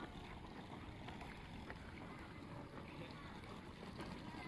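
Faint outdoor ambience: a steady low rumble of wind on the microphone, with distant indistinct voices.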